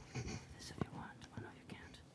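Quiet whispered speech, with one light click a little before the middle.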